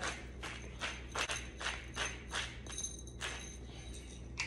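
Manual twist-top seasoning grinder being turned over a bowl: a run of short dry grinding clicks, about two or three a second.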